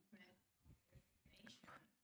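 Near silence in a pause in a talk, with only faint traces of a voice.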